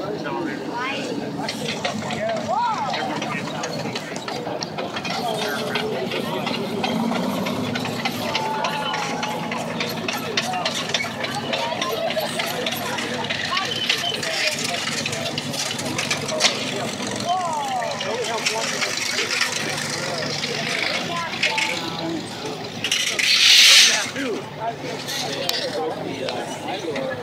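T-34/85 tank's V-2 V12 diesel engine running steadily as the tank drives and pivots, under constant crowd chatter. Near the end comes a loud rushing burst of noise about a second long.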